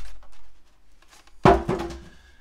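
Handling noise from the plastic housing of a Lucky Duck Revolt electronic predator call being turned over in the hands close to the microphone. A low thump comes at the start, and a sharp knock with a short ring about one and a half seconds in.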